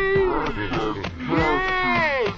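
Voices holding two long drawn-out notes, each sliding up and then back down over about a second.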